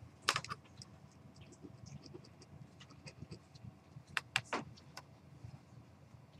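Faint scattered clicks and small rattles: a sharp cluster about a quarter second in, a few light ticks, then another cluster of clicks around four seconds in.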